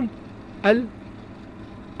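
A steady low machine hum, with one short spoken word just under a second in.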